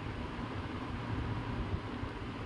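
Steady low background rumble with a faint hiss, even throughout, with no distinct sounds in it.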